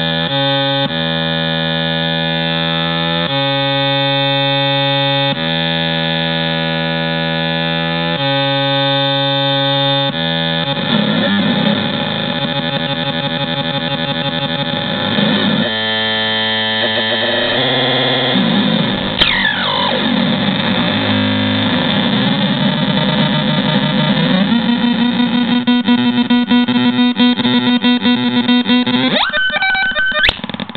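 Homemade drone synthesizer playing a dense, noisy drone whose pitch steps between notes as its knobs are turned. After about ten seconds it turns noisier and warbling, with a falling sweep midway. It then settles into a steady pulsing tone before sweeping again near the end.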